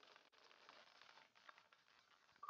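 Near silence: room tone, with a few faint brief ticks.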